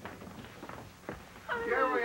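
Women's high voices exclaiming over each other in an excited greeting, starting about one and a half seconds in and loud, after a few faint footsteps on the hall floor.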